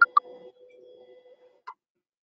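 Two quick sharp computer mouse clicks, then one more click about a second and a half later, over a faint steady hum that stops shortly before the last click.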